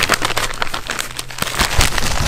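Clear plastic poly bag crinkling loudly as it is handled and a folded T-shirt is pulled out of it.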